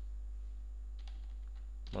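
A few faint computer-keyboard key presses, backspacing out part of a typed command, over a steady low electrical hum.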